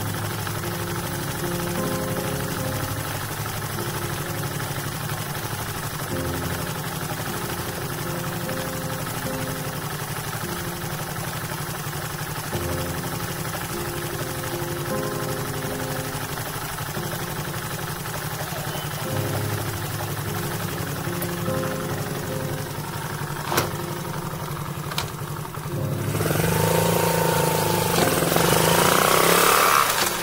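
Loncin 125 motorcycle's single-cylinder four-stroke engine idling steadily. About four seconds before the end it gets louder and busier as the bike is ridden off.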